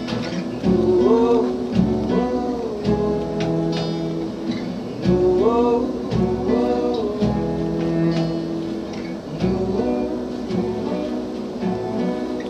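Unplugged folk band playing live: an acoustic guitar strumming under a melody line that rises and falls in repeated phrases, with cello.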